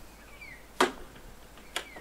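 Two brief clicks about a second apart over a quiet outdoor background.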